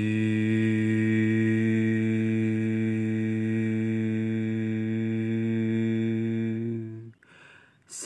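A person humming one long, steady low note, a mouth-made engine noise for a hand-worked toy excavator loading dirt. It breaks off about seven seconds in and starts again just before the end.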